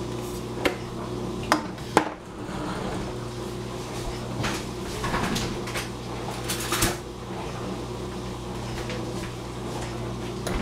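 Kitchen containers and utensils being handled: a few sharp clicks and knocks, the loudest about two seconds in and another near seven seconds, with some rustling between, over a steady low hum.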